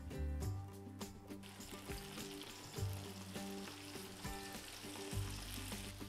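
Flour-and-cornstarch-coated cauliflower florets deep-frying in oil at about 165–170 °C: a steady sizzle, with soft background music underneath.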